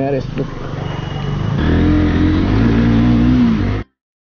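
Motorcycle engine running, stepping up to a louder, steady higher rev about one and a half seconds in, then cut off abruptly near the end.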